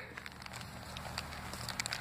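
Faint crinkling of a thin plastic bag being opened by hand, with a few light clicks over low background noise.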